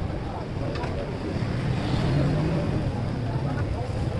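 Busy street-food stall ambience: a steady low rumble with voices talking in the background.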